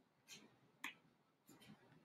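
Near silence with three faint short clicks, the second one the clearest.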